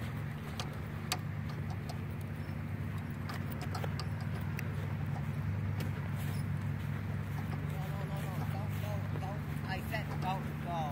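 A golf cart running at a steady speed, heard from on board as a low, even hum with scattered clicks and rattles.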